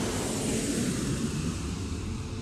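Jet airliner taking off, its engines at full power making a steady rushing noise.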